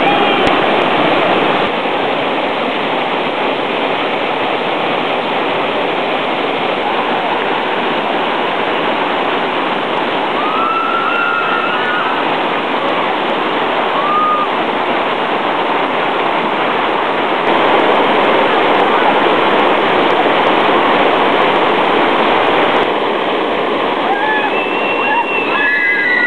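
White-water river rapids rushing steadily and loudly over rocks.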